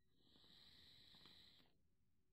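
A faint, airy draw of about a second and a half: a puff inhaled through a Pro Tank clearomizer on an Eleaf iStick 20W box mod, a "toot" on the e-cigarette.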